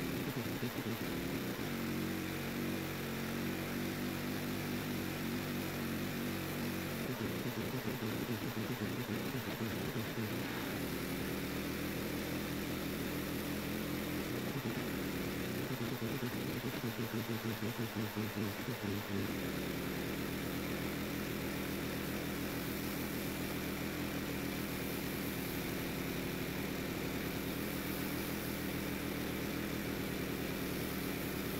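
Pressure washer's engine running steadily under a spray hiss, its note shifting for a few seconds twice in the middle.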